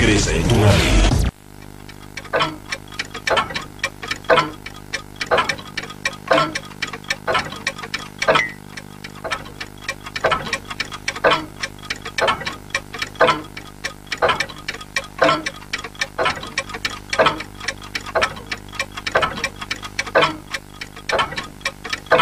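Cartoon clock ticking: sharp, even ticks about once a second, with fainter ticks in between. Before it, loud music and sound effects cut off abruptly about a second in.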